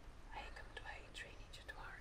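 A man whispering a few short words, miming a mantra being whispered into someone's ear.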